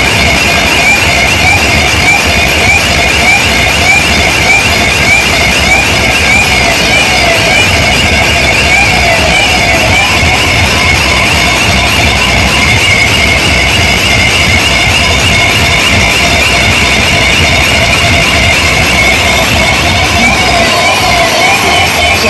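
A truck-mounted DJ sound system playing at full volume: a warbling, siren-like electronic tone repeating over steady heavy bass, loud enough to overload the recording.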